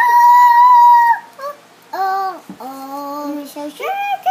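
A toddler's long, loud, high-pitched "ahh" squeal lasting about a second, followed by several shorter "ahh" calls, some of them lower in pitch. Another squeal starts near the end.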